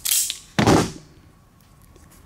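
Klein Tools Katapult spring-loaded wire stripper snapping shut and open on injector wire, two sharp clacks about half a second apart, the second the louder.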